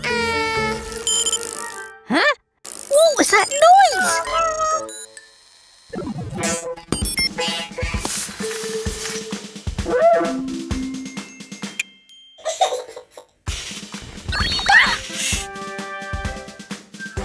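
Cartoon background music with playful sound effects: bouncing, sliding pitch glides and a run of short light hits, along with wordless cartoon character voices.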